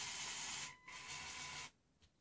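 LEGO Power Functions M-motor running as it tilts the snow groomer's dozer blade, a steady whirring with a faint thin whine. It runs in two short spells with a brief stop between them, then cuts off a little before the end.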